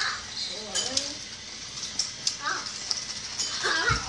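Young child's wordless voice: short squeals and sounds that glide up and down, with a few sharp clicks in the first half.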